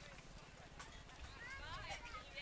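Faint, indistinct voices of baseball players and spectators calling out across the field, with a louder call near the end.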